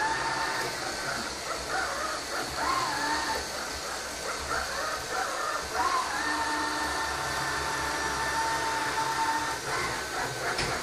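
Aldi Stirling robot vacuum cleaner running, a steady whir with a whining tone that wavers, then holds steady from about six seconds in until just before the end.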